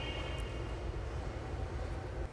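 Steady low rumble with a soft hiss: background room noise, with a faint thin high tone in the first half second.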